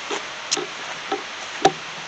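Steady outdoor background hiss with a few faint clicks and one sharp tick about three-quarters of the way through.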